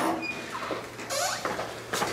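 Faint squeaks and shuffling of a person walking in through a doorway, over room noise.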